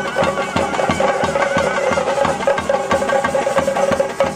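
Chende temple drums beaten with sticks in a steady driving rhythm, with a wind instrument playing held notes over them: the traditional temple band music for a nartana bali dance.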